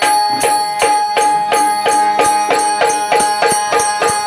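Dholki played solo by hand: a fast, even run of strokes, about four to five a second, mostly on the higher-pitched head, with a steady held note sounding underneath.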